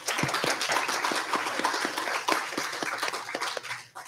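Congregation applauding, many hands clapping at once, tapering off near the end.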